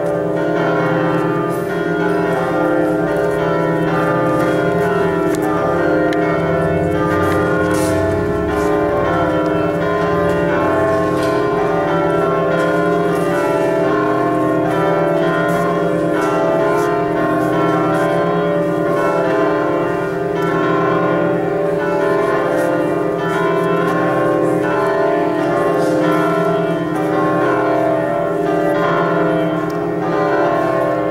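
Church bells ringing continuously, many strokes overlapping into one steady, loud peal.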